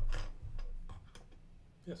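LEGO plastic bricks clicking against each other as pieces are handled and fitted: a series of small sharp clicks, the loudest near the start.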